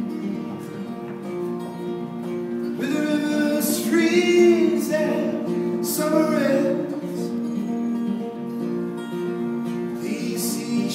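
Steel-string acoustic guitar played in a slow folk accompaniment, with a man's singing voice over it, strongest from about three seconds in.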